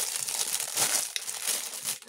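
Clear plastic packaging crinkling and crackling irregularly as hands handle and unwrap it.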